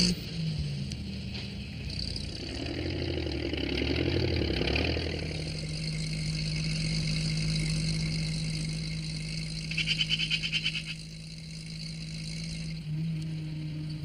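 Engine sound effects of a small farm tractor and a van driving off. The sound varies for the first few seconds and then settles into a steady engine hum, with a short rapid rattling about ten seconds in.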